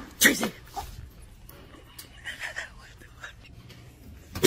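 Quiet whispering voice, with one brief sharp sound about a quarter second in.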